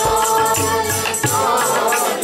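Sikh kirtan: a woman's voice leads a hymn, with the congregation singing along, over a hand-played tabla beat.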